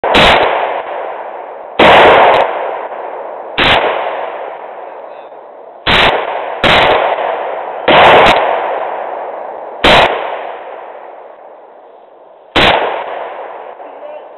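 AK-type rifle firing single shots one at a time, about nine in all, spaced one to three seconds apart, each shot trailing a long fading echo.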